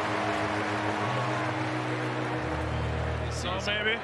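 Ballpark background of a TV baseball broadcast between plays: a steady crowd hiss over a low, even hum, with a brief voice a little before the end.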